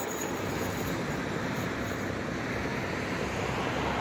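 Steady low rumble of distant engines.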